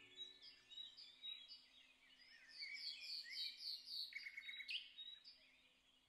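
Faint birdsong: a small bird chirping in quick series of short high notes, with a brief rapid trill about four seconds in.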